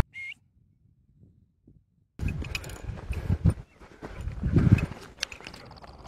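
Footsteps, rustling and handling noise from someone moving over rocky, scrubby ground, with low thumps of wind or movement on the microphone, starting about two seconds in. A single brief high chirp comes just before, then near quiet.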